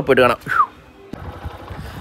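A man's voice briefly, then a motorcycle engine running low and steady, heard while riding.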